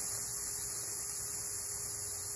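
A steady electrical hum with a high hiss, unchanging throughout.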